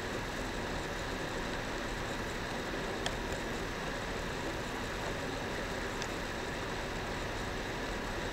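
Steady background hum and hiss of a computer screen recording's microphone, with two faint clicks, about three and about six seconds in; the later one comes as an image result is clicked.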